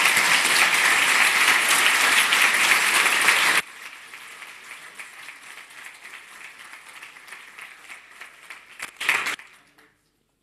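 Audience applauding at the end of a talk. The clapping drops suddenly to a much lower level a little over three seconds in, carries on faintly, swells briefly near the end and then dies away.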